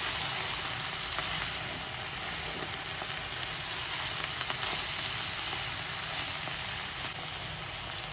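Shredded cabbage and cherry tomatoes sizzling steadily in a hot stainless steel frying pan as they are stirred and tossed, with a few faint clicks.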